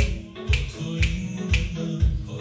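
Background music with a steady beat, about two beats a second, with a sharp snap-like hit on each beat over sustained pitched tones.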